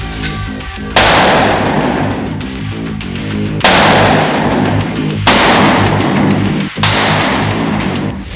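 Four loud Desert Eagle pistol shots, spaced about one and a half to two and a half seconds apart, each sudden and followed by a long fading tail, over background music.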